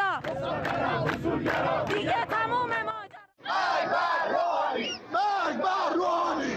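A large crowd of protesters shouting slogans with raised voices. The sound breaks off for a moment about three seconds in, then another crowd's shouting picks up.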